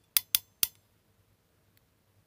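Hand crimping tool clicking three times in quick succession as it closes on a wire crimp terminal.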